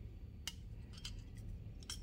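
Three small clicks and taps of a ferrite ring being handled against a steel ruler, the first about half a second in the clearest, over a low steady hum.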